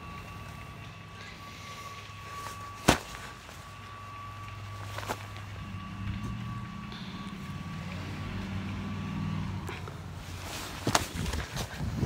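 A gloved hand slapping a tossed football: one sharp, loud smack about three seconds in and a lighter one about two seconds later. A low vehicle engine hum runs underneath and swells in the middle. A cluster of knocks and bumps near the end comes from the phone being handled.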